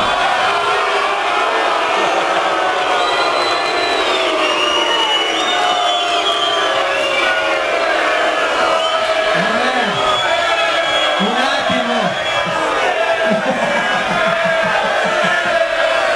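Large crowd cheering and shouting, many voices together, with a few louder single shouts rising and falling about two thirds of the way through.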